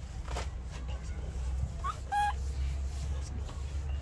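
A short, pitched animal call about two seconds in, just after a brief rising chirp, over a steady low background rumble.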